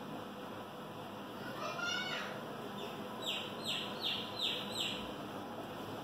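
A bird calling: a quick rising run of notes, then five short downward-sliding notes in a row, over a steady background hiss.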